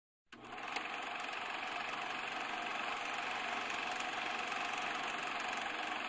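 Film projector running: a steady, fast mechanical clatter that starts suddenly, with a single click soon after it starts.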